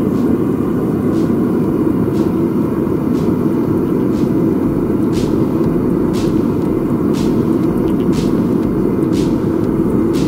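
Propane burner of a small melting furnace running steadily at full flame, a loud even rush of burning gas, as roasted galena buttons are melted down to silver. Faint ticks come about once a second over it.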